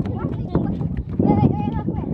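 Footsteps clicking on a hard surface while people walk, with voices talking over them, loudest a little past halfway.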